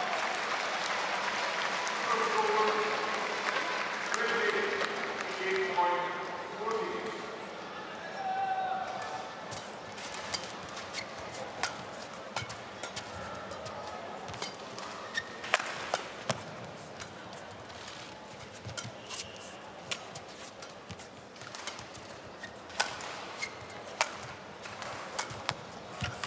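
Men's singles badminton rally: rackets striking the shuttlecock again and again as sharp, irregular cracks, with the quiet murmur of an indoor arena behind. Several seconds of people's voices come before the rally.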